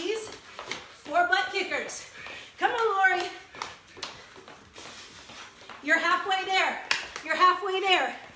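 A woman's voice calling out in short bursts, with thuds and slaps of feet landing on a hard floor between them during jumping workout moves.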